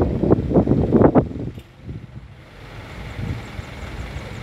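Low, even rumble of street noise after a moment of speech in the first second.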